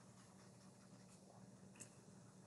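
Near silence: faint room tone, with one faint click near the end.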